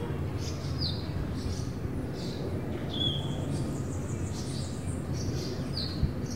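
Birds chirping outdoors in short, high calls every second or two, over a steady low background hum.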